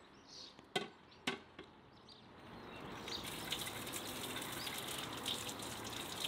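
Two sharp knocks, then water from an outdoor tap starts running about halfway in and splashes steadily over a cucumber being rubbed clean by hand.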